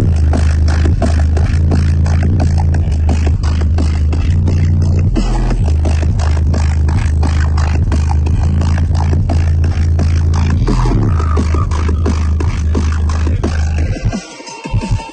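Bass-heavy electronic music played at high volume through an EDGE EDP122SPL car subwoofer, heard inside the car's cabin: a very deep, stepping bass line under a steady beat. The sound drops away abruptly at the very end.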